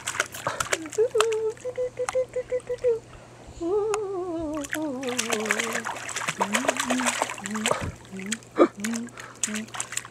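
A baby's hands slapping and splashing shallow water, a string of small splashes, under long wordless vocal notes: a held note early on, then a long wavering note that glides downward, then a run of short low notes.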